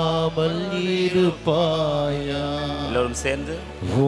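A man's voice chanting a slow Tamil devotional hymn into a microphone, holding long notes that waver slightly, with short breaths between phrases.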